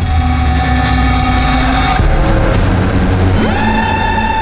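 Dramatic background score: sustained synth chords over a deep low rumble, changing chord about two seconds in, with a rising sweep near the end into a new held chord.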